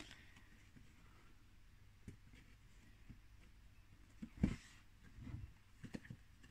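Mostly quiet room tone with a few faint handling sounds of card roof pieces being held and pushed together by hand; one brief, louder handling noise comes about four and a half seconds in.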